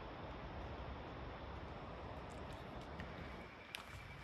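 Faint, steady outdoor background hiss with no clear source, broken by a few soft clicks in the last second and a half.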